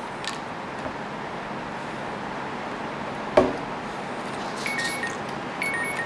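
Steady room hiss with one sharp click about three and a half seconds in, and two faint short high tones near the end.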